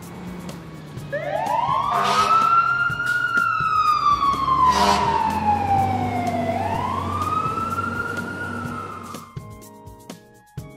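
Fire engine siren wailing in a slow rise and fall: up, down, and up again, then fading out near the end. Two short bursts of noise cut in, about two and five seconds in.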